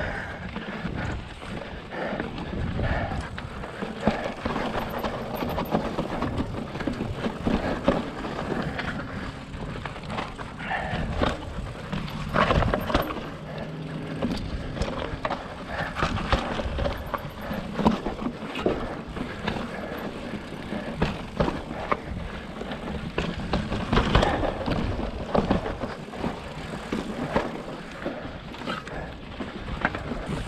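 Fezzari La Sal Peak mountain bike rolling over rough, wet slickrock: tyres scrubbing on rock and grit, with irregular knocks and rattles from the bike as it drops over ledges, louder clatter in bursts.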